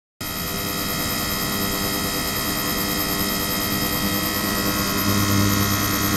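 Ultrasonic cleaning tank running: a steady hum overlaid with many high-pitched tones and a constant high whine. A lower hum grows louder about five seconds in.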